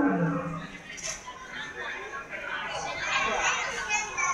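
Animatronic dinosaur's recorded roar played through its speaker, mixed with children's voices, which rise near the end.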